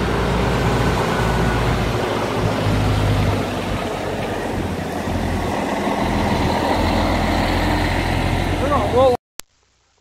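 Diesel engine of a loaded semi tractor-trailer running steadily as the truck pulls in and stops. It cuts off suddenly about nine seconds in.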